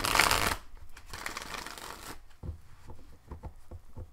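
A deck of tarot cards shuffled by hand: two rushes of shuffling in the first two seconds, then light taps and clicks as the deck is handled on the table.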